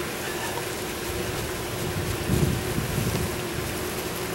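Outdoor background noise: wind rumbling on the microphone in gusts, strongest a little past the middle, over a steady hiss and a faint steady hum.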